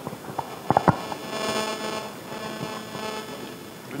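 A handheld microphone is knocked and handled twice in quick shots just before one second in. Then the sound system carries a steady hum made of several tones for about two seconds, a sign the microphone is live but not yet working properly: the next person says it can't be heard.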